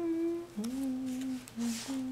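A person humming a slow tune with closed lips: a higher held note first, then a slide down into a string of lower held notes separated by short breaks.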